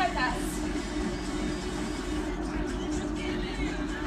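Two treadmills running at a run pace, their motors and belts giving a steady hum, under background music.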